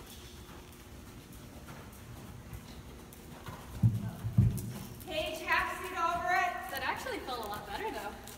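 Horse moving on the soft sand footing of an indoor arena, with two heavy low thumps about four seconds in. In the second half a drawn-out, wavering vocal sound lasts about two seconds and slides down in pitch at its end.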